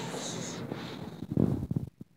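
Low, irregular rumbling and knocking handling noise from the recording phone being moved, loudest in the second half.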